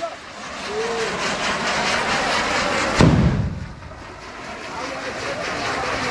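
Ground fireworks burning with a dense crackling hiss as they spray sparks, then one sharp, loud firecracker bang about three seconds in.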